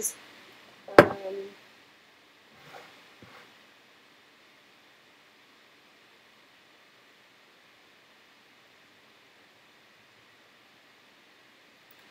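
A sharp click with a short pitched tail about a second in, then two faint sniffs at a glass of beer near three seconds, then near silence: room tone.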